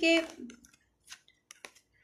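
A short spoken syllable, then a few light, sharp clicks of stiff oracle cards being picked up and handled, starting about a second in.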